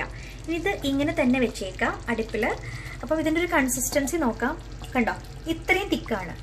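A person talking over a pan of thick curry gravy simmering and bubbling, with a steady low hum underneath and a brief hiss a little past halfway.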